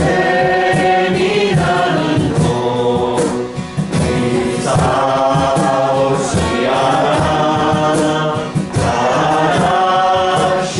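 Several voices singing a hymn in Japanese, with an acoustic guitar strummed in accompaniment.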